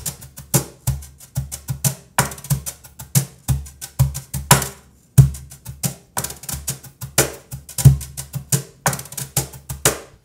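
A wooden cajon played as a drum set with a broomcorn broomstick and a brush: deep bass accents about every second and a bit, snare-like backbeat strokes, and quick sixteenth-note strokes rolling between them in a steady groove.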